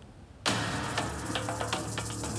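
A brief near-quiet pause, then about half a second in a sudden start of a steady low hum with noise and scattered clicks, which goes on.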